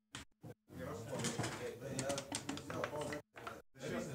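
Indistinct voices in the room with a few light clicks. The sound cuts out briefly near the start and again shortly before the end.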